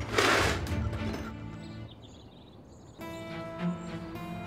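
Background drama score with a loud crashing hit just after the start. The music then fades, and a new music cue comes in about three seconds in.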